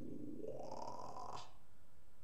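A man's breathy mouth sound through pursed lips: an airy rush that rises in pitch for about a second and a half, then cuts off suddenly.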